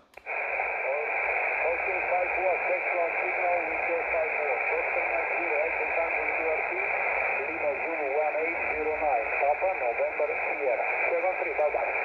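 Single-sideband voice received on the 17-metre band through a Xiegu X5105 transceiver's speaker: a narrow, muffled voice over steady hiss. It cuts in abruptly just after the start as the radio switches to receive and cuts off abruptly at the end as it goes back to transmit.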